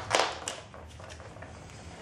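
A brief rustle with a light click about half a second in, as the plastic film and tools are handled over the glass, then only faint room hiss.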